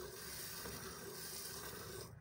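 Faint, steady hiss of milk squirting from a water buffalo's teats into a partly filled steel bucket during hand milking.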